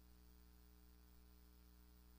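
Near silence: a faint, steady low electrical hum with light hiss, unchanging throughout.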